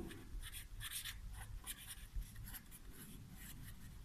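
Felt-tip pen writing on paper: faint, quick scratchy strokes of the tip as words are written.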